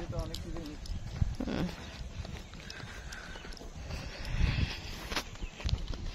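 Footsteps on a dirt path while walking, with a low rumble of wind on the microphone and faint voices.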